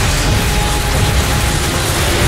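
Television sound effect of swirling magical energy: a loud, dense rushing noise with faint steady tones beneath it.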